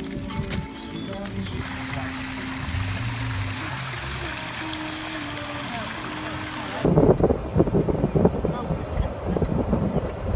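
Background music with held notes, then, from about seven seconds in, loud gusting wind buffeting the microphone of a moving golf cart.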